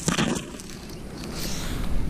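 Grass rustling against a hand and a handheld phone being moved, with a brief knock at the start and a soft, even rustle after it.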